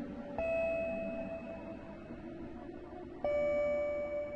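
Ambient electronic synthesizer music: a sustained low pad with two bell-like tones, one struck about half a second in and another near the end, each ringing out slowly.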